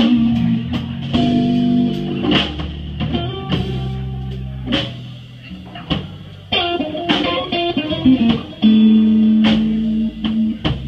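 Live blues band playing a slow blues instrumental passage: electric guitar lead lines over bass guitar and drum kit. The playing drops back for a moment around five to six seconds in, then the guitar comes in with long held notes near the end.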